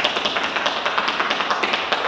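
Trainers tapping quickly and evenly on a hard floor: fast alternating toe taps from a low squat during a cardio drill.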